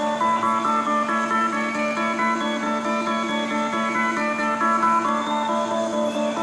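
Live rock band music from a concert recording: fast, evenly repeating pitched notes over a steady low drone, without a break.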